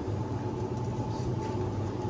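Steady low hum and background noise of a supermarket interior, with no distinct events.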